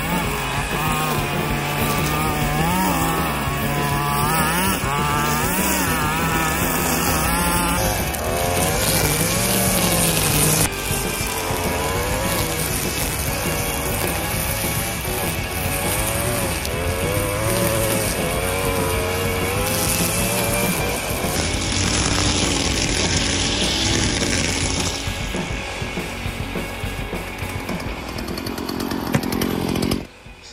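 Stihl gas string trimmer running under load as its line cuts grass and weeds, the engine pitch rising and falling over and over as the throttle is worked. It eases off somewhat a few seconds before the end.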